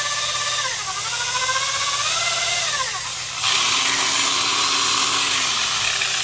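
The brushed motor of a 3/8-inch right-angle electric drill running after a rebuild with a hand-filed commutator. Its whine dips and rises in pitch as the speed changes, and about three and a half seconds in it turns louder and hissier, with a lower hum that sinks near the end.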